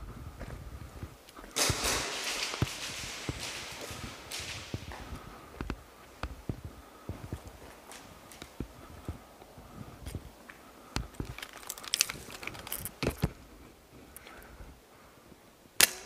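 Indoor airsoft game sounds: scattered footsteps and sharp clicks and cracks of airsoft gunfire. A longer noisy burst comes about two seconds in, and a cluster of sharp cracks between eleven and thirteen seconds in.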